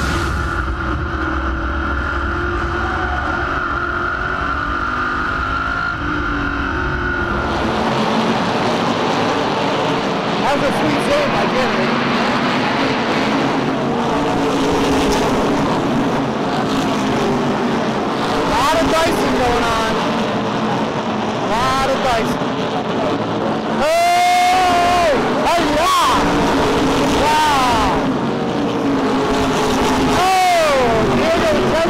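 An SK Modified race car's engine running hard and steady, heard through an in-car camera. After about seven seconds the sound changes abruptly to the grandstand, where race cars run past amid voices from the stands.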